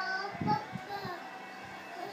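A young child singing in short phrases, mostly in the first second, with music faintly underneath.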